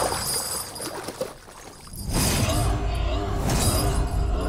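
Action-film soundtrack: a heavy splash and spatter of mud in the first second, then a brief lull. About two seconds in, loud dramatic score comes in with a deep rumble and a wavering voice over it.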